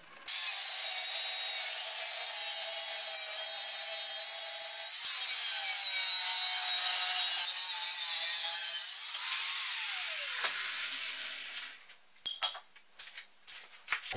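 Makita angle grinder with a thin cut-off disc cutting through steel bar held in a vise: a continuous high, rasping whine whose pitch wavers and sags as the disc bites. It stops about twelve seconds in, followed by a few light metallic clicks.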